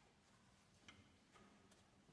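Near silence in a concert hall, broken by a few faint clicks and light taps, one just under a second in and a couple more soon after, from string players settling their instruments, chairs and stands.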